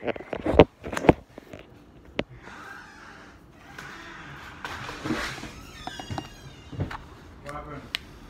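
Handling noise: a few sharp knocks as the phone is handled, then rustling and scraping as a small plastic lid is pulled off a portion cup of hot sauce, with a brief voice near the end.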